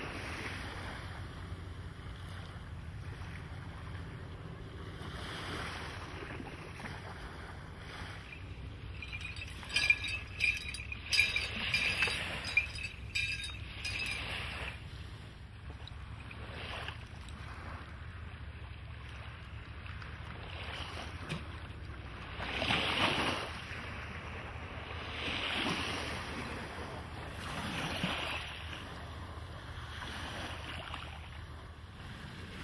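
A boat's engine drones steadily under wind on the microphone and water washing past the hull, with several swelling whooshes of water late on. About ten seconds in comes a burst of sharp clicking and jingling lasting a few seconds.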